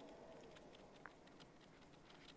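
Near silence, with faint scratching and light ticks of a broad-nib fountain pen writing on paper.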